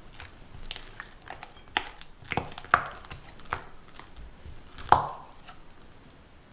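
Silicone spatula stirring thick cream cheese in a glass bowl: soft scraping and squishing with about five sharp clicks of the spatula on the glass, the loudest near the end.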